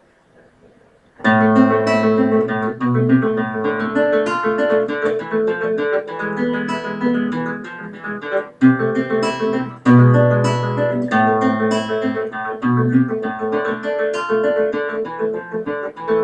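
Classical guitar played by plucking, running through a piece of melody and bass notes. The playing starts about a second in after a quiet moment, with a short break a little past halfway.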